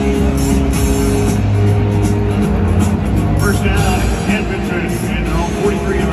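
Music played over a football stadium's loudspeakers during a break in play, with people's voices mixed in during the second half.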